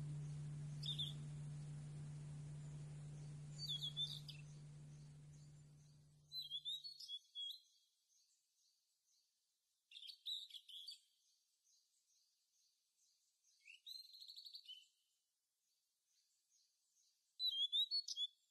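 Quiet bird chirps in short bursts every few seconds, over a low ringing tone that fades away about six seconds in.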